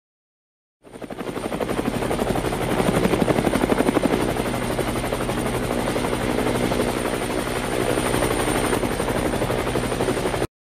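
Helicopter sound effect: the rotor blades' fast, steady chop, with a thin high whine on top, as the police helicopter lifts off. It swells in about a second in and then holds steady.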